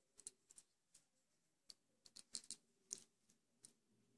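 About a dozen light, irregular clicks of metal circular knitting needle tips knocking together while working purl stitches and passing the previous stitch over in a bind-off.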